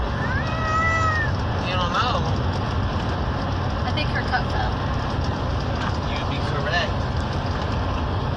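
A toddler's high-pitched squealing calls, one long arched squeal in the first second and shorter ones about two seconds in and later, over steady road rumble inside a moving car's cabin.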